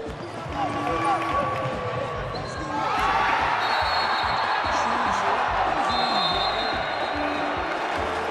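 Live basketball game sound: a ball bouncing on a hardwood court with players' voices. About three seconds in, crowd noise swells, and shrill whistles sound twice.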